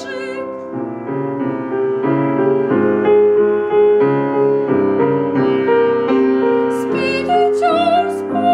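Grand piano playing a classical accompaniment passage on its own, then a woman's operatic voice re-entering with vibrato near the end.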